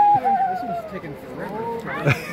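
A person's long drawn-out high vocal cry, falling slightly and fading out about a second in, followed by scattered voices.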